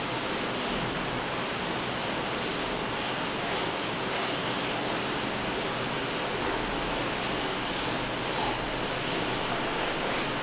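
Steady hiss of background noise, with a few faint scratches of chalk on a blackboard as a fraction is written.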